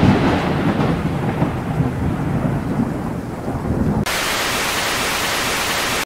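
Thunderstorm sound effect: a low rolling rumble of thunder that fades away, then about four seconds in an abrupt cut to steady rain hiss.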